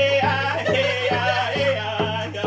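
Music with a steady beat of about two beats a second under a high, wavering singing voice.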